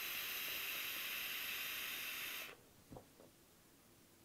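Steady hiss of a long draw on a Joyetech Cuboid Mini sub-ohm vape as its 0.25-ohm stainless steel notch coil fires, cutting off abruptly about two and a half seconds in. Near the end there is one faint small sound, then near silence during the exhale.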